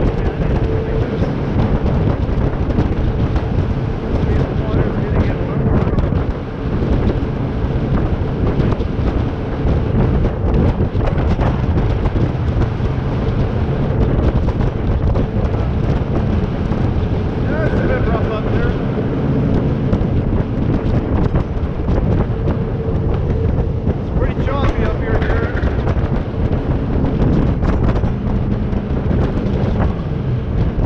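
Jet boat's 6.2-litre V8 running steadily under way, a constant engine drone with a faint steady hum. Wind buffets the bow-mounted microphone and water rushes past the hull.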